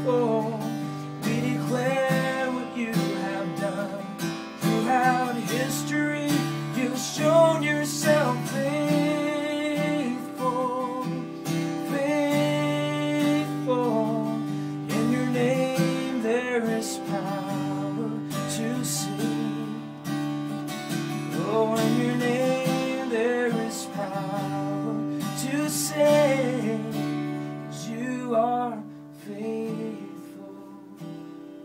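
A man singing a slow worship song live, accompanied by his own strummed acoustic guitar. Near the end the music gets quieter.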